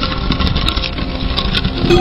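A loud, steady rumbling rush from an intro sound effect, with a few faint high ticks. A sustained ringing tone sets in near the end.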